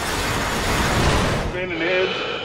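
Logo-animation sound effect: a dense rushing noise over bass-heavy music, both cutting off about one and a half seconds in. Near the end comes a short wavering voice-like sound.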